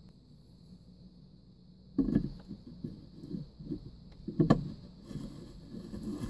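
About two seconds of quiet, then a run of irregular knocks and scrapes with two louder thumps, from a clear plastic water filter housing being handled and lifted up to the filter head.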